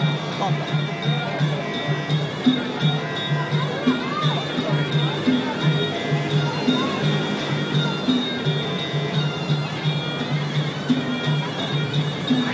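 Live Muay Thai ring music (sarama): a reedy pi java oboe winds a wavering melody over a steady beat of klong khaek drums, about three to four strokes a second, with regular clicks of ching hand cymbals.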